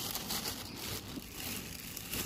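Thin plastic bag crinkling and rustling as a hand gathers it and pulls it back off a stone mortar.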